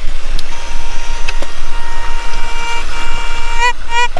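Metal detector signalling a buried target. A steady beeping tone holds for a couple of seconds, shifts higher, then breaks into short rising-and-falling chirps near the end as the search coil sweeps back and forth over the spot. The signal is pretty loud.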